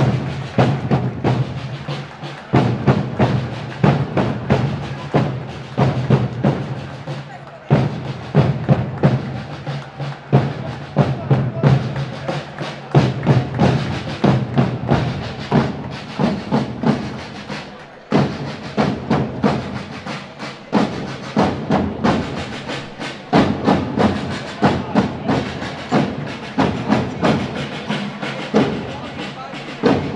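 A corps of rope-tensioned side drums in the style of historical pageant drummers, playing together in a steady, rapid marching rhythm.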